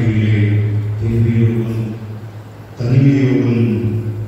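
A man's voice chanting in long, steady-pitched phrases, with a short break about two seconds in before the next phrase.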